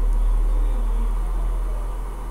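A steady low hum with no speech.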